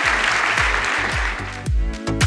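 Audience applauding, fading out over the first second and a half, while closing music with a deep, steady beat starts and takes over.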